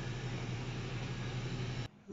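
Robot vacuum cleaner running: a steady motor hum with an even hiss of suction, cutting off suddenly near the end.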